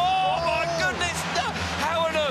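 Four 500cc speedway bikes racing through a turn in a tight pack, their engines a steady low drone under a commentator's excited, drawn-out exclamation.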